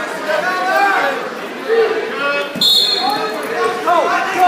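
Spectators and coaches talking in a large echoing gym, with one short referee's whistle blast a little past halfway through, just after a dull thud.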